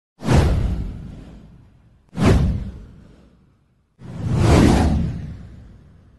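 Three whoosh sound effects for a title-card intro, each with a deep low end. The first two hit suddenly about two seconds apart and die away; the third swells up about four seconds in, then fades.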